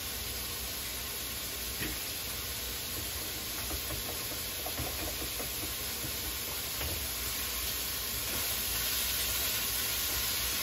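Bacon sizzling steadily in a frying pan, growing a little louder near the end. A few faint clicks from a utensil stirring in a mixing bowl.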